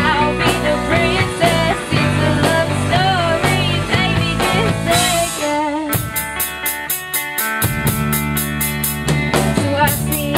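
Live rock band of electric guitars, bass guitar and drum kit playing a pop-rock song, with a melody line bending over the chords. About six seconds in, the drums change to a steady, fast cymbal pattern.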